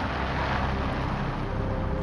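Steady rushing noise of a car driving, road and wind noise with a low hum underneath.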